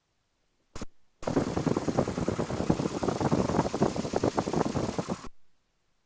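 Piper J3 Cub's Continental A-65 four-cylinder engine running at low power, a rapid pulsing that cuts in about a second in and cuts off abruptly about four seconds later, with a short blip of the same sound just before it.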